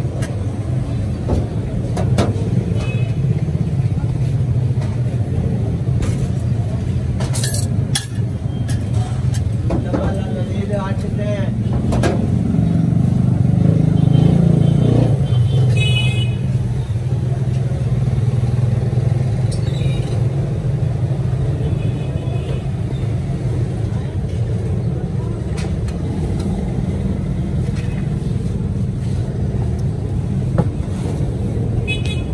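Busy street ambience: a steady low rumble of traffic with indistinct voices, and now and then the short ringing clink of steel spoons and plates being handled.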